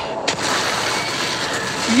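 A sudden loud crash about a third of a second in, followed by a dense rumbling noise, from a TV drama's sound effects. A woman's cheer begins at the very end.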